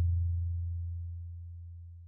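The tail of a deep, low bass tone from an outro sound effect, fading away steadily.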